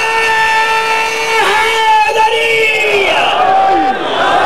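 A single amplified man's voice holds a long, high chanted note for about three seconds, breaking briefly twice, then slides down in pitch near the end.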